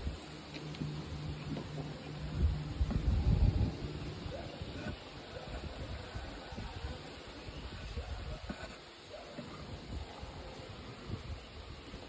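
Wooden hive top bars being handled and shifted, with low rumbling and a few light knocks. A steady low hum runs through the first few seconds.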